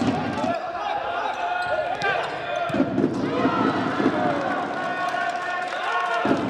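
Indoor futsal court sounds: sneakers squeaking on the wooden floor and ball thuds, with players' shouts and crowd noise.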